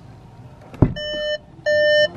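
A thump as the driver's door of a 2021 VW Golf 8 GTI is unlatched, then two electronic warning beeps from the car, the second louder: the door-open warning.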